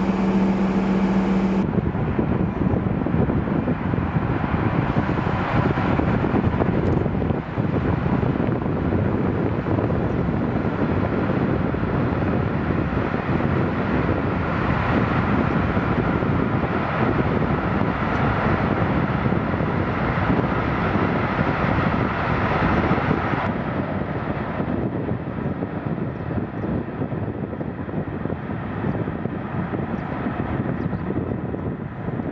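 A Rhine car ferry's engines running with a steady drone as it churns through the water, mixed with wind noise on the microphone. For the first couple of seconds, before that, a boat engine's steady low hum.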